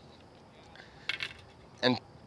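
Fishing rod and tackle being handled on the boat deck: a brief, light clinking rattle about a second in.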